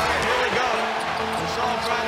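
Basketball dribbled on a hardwood arena court, steady bouncing under a loud arena crowd, with music playing.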